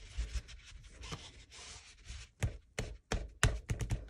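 A small ink pad rubbed over a plastic embossing folder, then tapped against it in a quick run of sharp taps, several a second, from a little past halfway.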